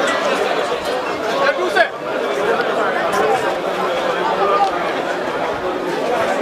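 Chatter of a large crowd: many voices talking over one another.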